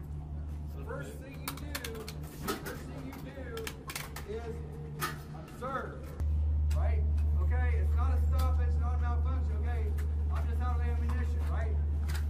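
Indistinct talking over a steady low hum that gets markedly louder about halfway through, with a few sharp clicks scattered throughout.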